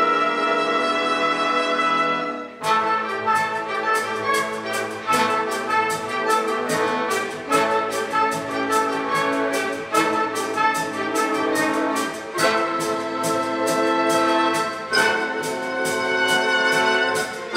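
Full orchestra of strings, brass and percussion playing a Broadway show-tune arrangement. A held, brass-heavy chord breaks off about two and a half seconds in. A brisk passage follows, with a steady beat of percussion strikes under the brass and strings.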